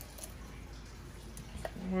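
A few faint clicks from a small plastic spice jar being handled over a pot of brine, against low room noise.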